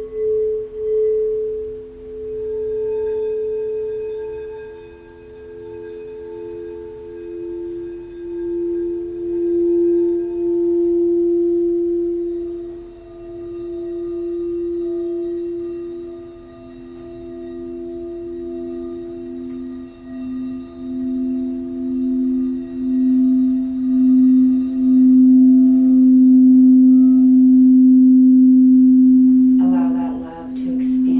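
Crystal singing bowls ringing, several pure tones overlapping with a slow pulsing waver. A higher bowl fades out early, a middle one swells and then fades, and a lower bowl builds to the loudest tone near the end.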